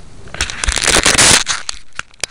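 Handling noise: fingers rubbing and gripping a small camera right at its microphone, a loud scraping, crackling burst that peaks about a second in, with scattered clicks around it.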